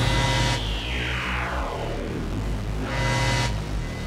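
Hardcore electronic dance music in a breakdown: the kick drum drops out, leaving a sustained low bass and a synth sweep falling in pitch, with a short swell of noise about three seconds in.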